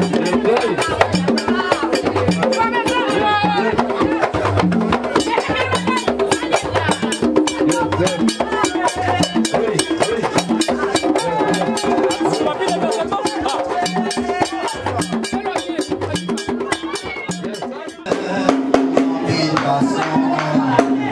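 Haitian Vodou ceremonial drumming, hand drums beating a steady fast rhythm, with voices singing over it. Near the end the sound dips briefly and switches to a different passage.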